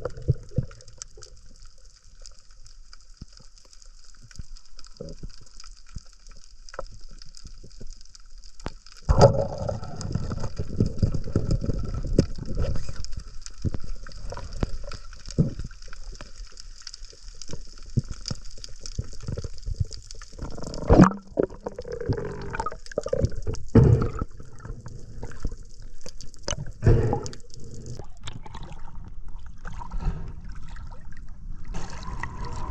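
Underwater water noise heard through an action camera's housing while free-diving with a pole spear: muffled churning and gurgling with a faint high crackle, much louder from about nine seconds in. Scattered sharp knocks, the loudest about two-thirds through and again near the end.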